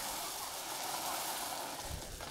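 Dry animal food pouring steadily out of a tipped bag onto leaf litter, a continuous hissing patter.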